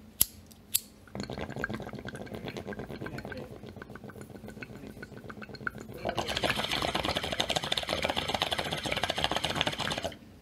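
Film soundtrack heard in the background: two sharp clicks, then a dense crackling, rattling noise that grows louder and brighter about six seconds in.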